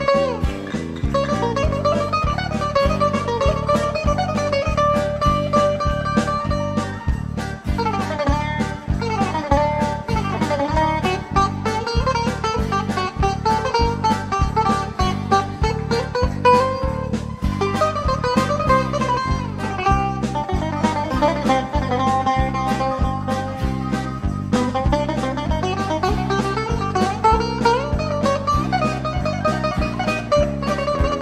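Instrumental break of a Greek rebetiko-style song: plucked string instruments play the melody over a steady rhythmic accompaniment, with no singing.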